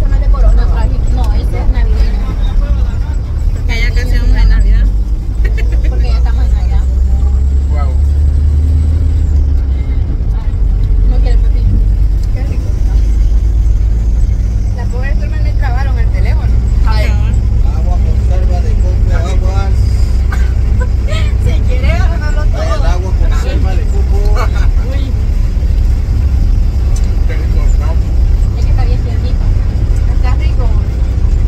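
Steady low rumble of a moving bus, engine and road noise heard from inside the passenger cabin, with voices talking over it in the second half.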